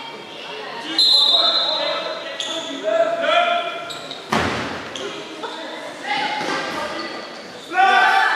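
Players shouting to each other in a large gym hall, with one loud hit on the giant kin-ball about four seconds in that rings in the hall.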